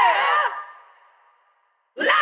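Isolated male heavy-metal lead vocal, separated from the band mix: a sung note slides down in pitch and ends, and its reverb tail fades to silence about a second and a half in.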